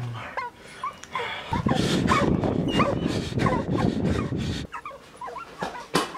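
Dogs whimpering and yelping in short high cries, over a low rumbling noise that runs from about one and a half seconds in to nearly five seconds.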